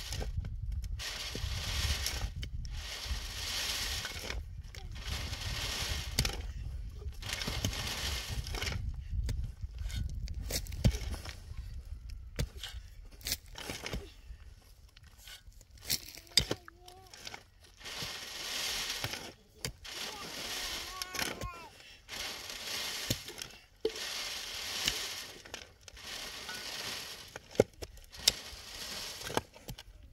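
Soil shovelled onto a tilted wire-screen sieve, the grit hissing and rattling as it slides through and down the mesh in repeated strokes about every two seconds, with sharp clicks of the shovel against stones. Wind rumbles on the microphone in the first half.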